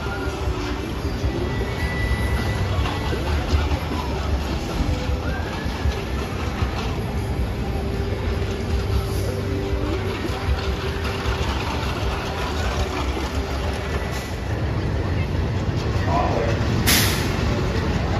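Amusement park ambience: background crowd chatter over a steady low rumble of rides or a ride train. A brief sharp hissing burst comes near the end.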